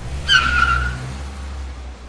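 A car pulling up: a low engine rumble with a short high screech of braking tyres starting about a quarter second in and dying away by about one second.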